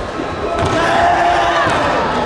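Voices calling out in a large, echoing sports hall, mixed with dull thuds of bare feet stepping and stamping on foam tatami mats.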